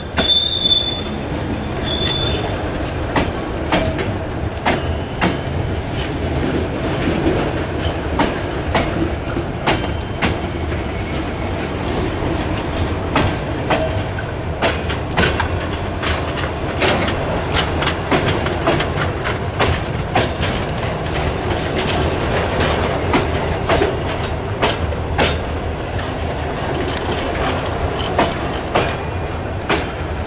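Freight train hopper wagons rolling past close by: a steady wheel-on-rail rumble with frequent irregular sharp clicks from the wheels on the rails. A high wheel squeal sounds in the first two seconds.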